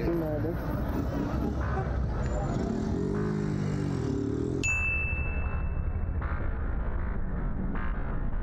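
Street recording from the reacted clip: traffic and people's voices, with a sharp electronic ding about halfway through that holds one high tone for about a second and a half.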